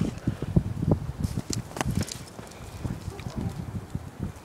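Husky romping with a plush toy on bare dirt: a quick, irregular run of low thuds and scuffs, busiest in the first two seconds and sparser after.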